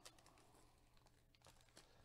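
Near silence, with a few faint crinkles and ticks of a foil trading-card pack and cards being handled.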